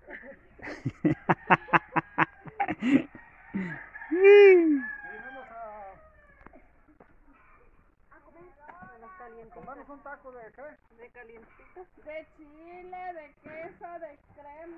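A chicken cackling: a run of quick clucks, then a louder drawn-out call about four seconds in. Faint voices follow.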